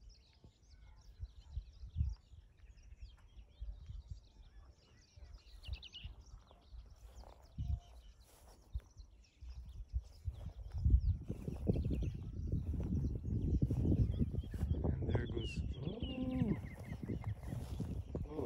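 Birds chirping and calling, faint at first. From about ten seconds in, wind rumbles on the microphone, and near the end a series of high notes steps down in pitch.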